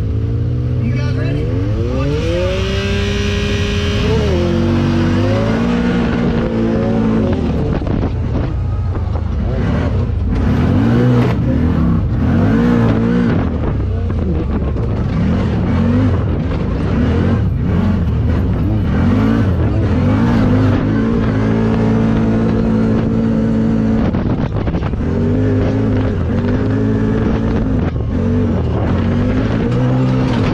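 2021 CFMOTO ZFORCE 950 Sport's V-twin engine heard from the driver's seat, revving up with a steep rise in pitch a second or two in as the side-by-side pulls away from a standstill. It then keeps rising and falling with the throttle as it accelerates under racing load.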